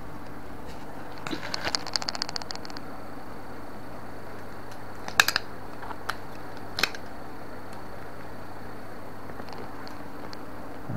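Handling noise from an action camera being set down and settled on a table, picked up close by its own microphone: a quick run of small clicks, then a few sharp knocks a second or so apart, over a steady low hum.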